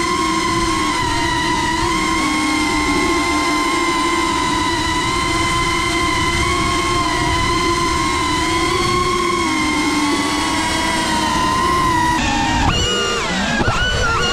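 Motors and propellers of a 3.5-inch FPV quadcopter (PersonaX) whining steadily, heard close up from the camera on board. Near the end the pitch swoops up and down as the throttle changes.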